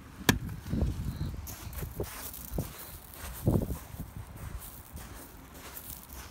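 A sharp plastic click just after the start, as the hinged cover of a motorhome's electric hookup socket snaps shut, followed by irregular footsteps on gravel, about one a second.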